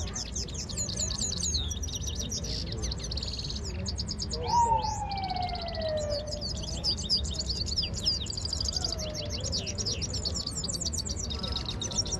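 Caged Himalayan (grey-headed) goldfinches singing in a song contest, a dense run of rapid high twittering chirps and trills that carries on with only brief breaks. About four and a half seconds in, a single loud falling whistle-like tone slides down over about two seconds.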